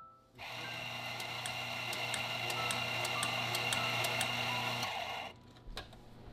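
A steady hiss with a low hum and soft regular clicks, about three a second, that switches on abruptly just after the start and cuts off abruptly about a second before the end. Faint music plays beneath it.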